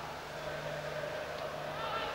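Ambient stadium sound of a football match: a steady murmur with faint, distant voices, over a constant low hum.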